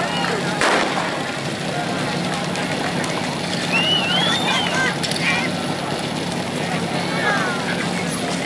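A single sharp shot about half a second in, typical of a starter's pistol setting off a firesport fire-attack run. It is followed by spectators shouting and cheering over a steady engine drone.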